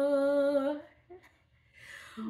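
A woman's unaccompanied voice holding one long, steady note that stops just under a second in, then a near-silent pause and a soft intake of breath near the end.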